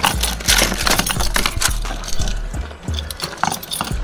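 Keys clinking and scraping in the lock of a metal sectional garage door as it is being unlocked, in short sharp clicks. Background music with a deep bass beat plays throughout.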